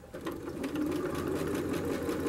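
Janome electric sewing machine stitching a seam, starting up at the beginning and then running steadily at speed with rapid, even needle strokes.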